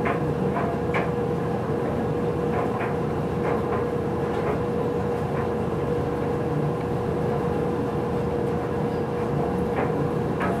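A steady mechanical hum with a constant mid-pitched whine running underneath, and a few faint light clicks now and then.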